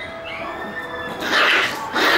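Shiba Inu puppies yelping and growling as they play-fight, with a loud burst in the second half, over background music with held notes.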